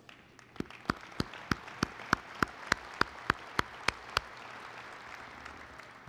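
Audience applauding in a large hall. One pair of hands claps loudly and evenly, about three times a second, over the general clapping, and the applause dies away near the end.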